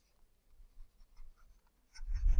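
Faint scratching of a stylus writing on a tablet, a few short strokes in the middle of an otherwise near-silent stretch.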